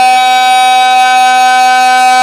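A man's singing voice holding one long, steady note, drawn out at the end of a sung line of a Pashto naat, without wavering in pitch.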